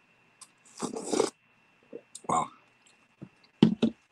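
Slurping tea up through a biscuit with its ends bitten off (a Tim Tam slam): a hissing suck about a second in, then chewing the tea-soaked biscuit, with a few sharp clicks near the end.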